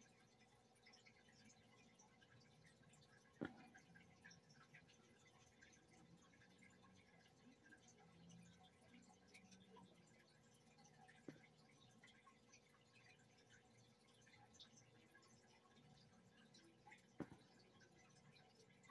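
Near silence: room tone with a faint steady hum, broken by three brief soft clicks, about three seconds in, halfway through and near the end.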